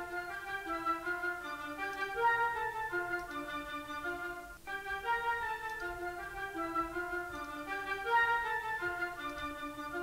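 Sampled orchestral woodwinds, flutes and oboes, playing a quick figure of short notes. The phrase plays twice, with a brief break about four and a half seconds in, as an EQ before/after comparison: the EQ adds about 2 dB at 5 kHz and 10 kHz for brightness and cuts some low mud.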